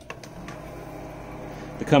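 A steady low mechanical hum with faint steady tones, with a few light clicks shortly after the start.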